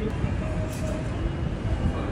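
Outdoor ambience of a crowded city square: a steady low rumble with faint distant voices.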